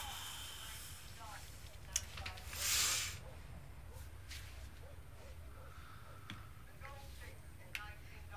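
A person's short, sharp breath, about three seconds in, heard as a hissing sniff or exhale against a quiet room, with a small click just before it.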